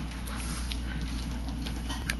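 Steady low hum and hiss of room tone, with a few faint clicks.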